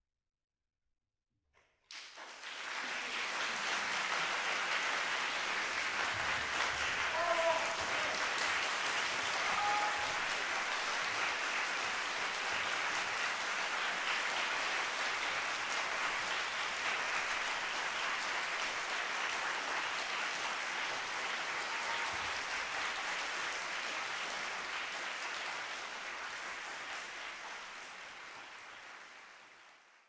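Concert-hall audience applauding. It starts suddenly after about two seconds of silence, holds steady, and fades out near the end.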